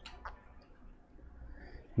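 Two faint clicks a quarter of a second apart at the start, then quiet room tone.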